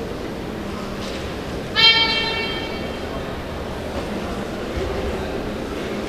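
A single high squeak about two seconds in, steady in pitch and fading over about a second, typical of a badminton shoe sole on the court mat, over the murmur of spectators in the hall.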